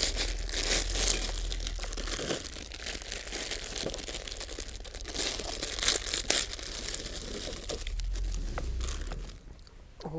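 Plastic instant-noodle packets crinkling and tearing as they are cut and ripped open by hand, a continuous rustle full of sharp crackles that dies away shortly before the end.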